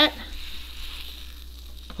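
Butter sizzling steadily on a hot griddle under a grilled cheese sandwich, an even frying hiss.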